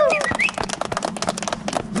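A small group of people clapping their hands: a quick, uneven patter of claps, with a brief voice right at the start.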